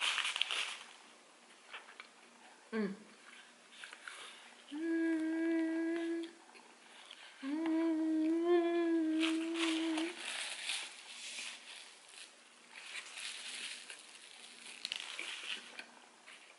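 A woman humming two long closed-mouth "mmm"s of enjoyment while chewing a mouthful of hamburger, the second one longer and wavering a little in pitch. Soft crackly eating sounds come and go around the hums.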